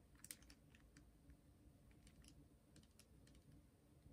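Near silence, broken by a few faint, light ticks in small clusters as a water brush's tip dabs and strokes across watercolour paper.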